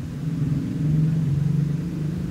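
A low, steady mechanical hum that gets louder about half a second in.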